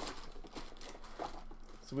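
Clear plastic wrapping crinkling and rustling as items are pulled out of a cardboard box.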